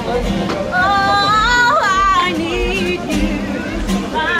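Live acoustic pop performance: a singer holds long notes with vibrato that climb and then fall away about halfway through, over acoustic guitar strumming and a steady low beat.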